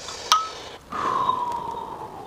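A metal spoon clinks once against a small glass bowl. It then scrapes thick sauce out along the glass, making a thin squeal that falls slowly in pitch.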